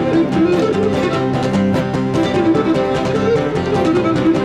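Cretan lyra playing the melody of a malevisiotis dance tune, with laouta and a guitar plucking and strumming a steady rhythm underneath.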